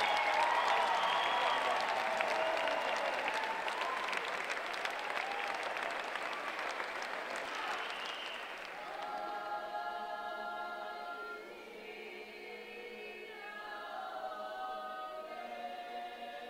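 Audience applause over singing and music for the first eight seconds or so, dying away. Then a small choir of children and adults sings slowly, several voices holding long notes together.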